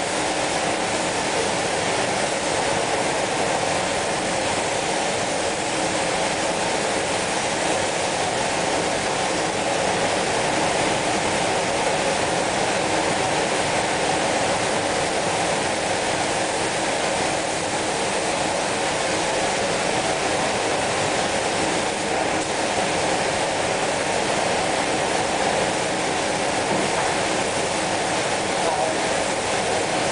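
Steady rushing air in a spray-painting booth: compressed-air spray guns misting the chrome solution over the booth's ventilation. The hiss holds at an even level without a break.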